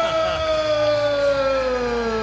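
A man's voice holding one long drawn-out shout that falls slowly in pitch for nearly three seconds: the ring announcer stretching out the new champion's name.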